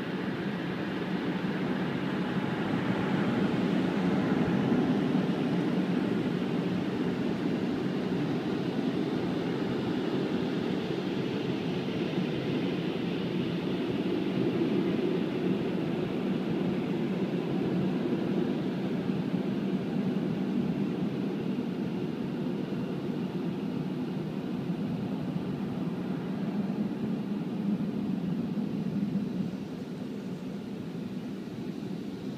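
An automatic car wash's drying blowers running, a steady loud rush of air heard from inside the car, dropping away near the end.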